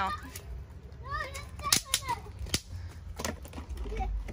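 Bang snaps (snap-pop fireworks) cracking on concrete as they are thrown down or stepped on: several sharp pops spread across a few seconds. A short high-pitched cry is heard about a second in.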